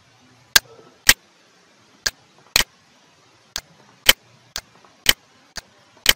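Computer mouse clicking: about nine sharp clicks, roughly half a second apart, with a couple of short pauses.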